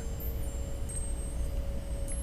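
Quiet ambient meditation music of a few steady held tones, chime-like, over a low hum.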